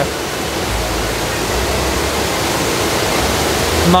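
Water of the Trevi Fountain cascading over its rocks into the basin: a steady, loud rush of water.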